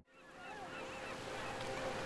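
Birds calling in short rising-and-falling chirps, fading in out of silence over a faint steady hum.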